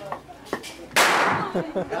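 A single loud, sharp crack about a second in, with a short fading echo.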